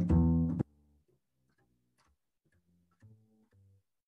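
Upright double bass plucked, playing a jazz walking line over a ii–V–I in C major: two loud notes at the start, then fainter notes with a near-quiet stretch in the middle.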